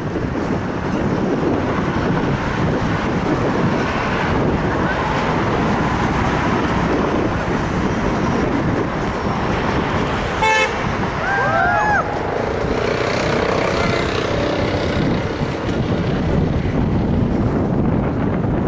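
Steady city traffic noise, with a short car horn toot about ten seconds in answering the protesters' call to honk, followed by a couple of brief high whoops.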